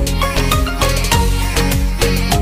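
Background music with a quick, steady beat of about four strokes a second over a bass line.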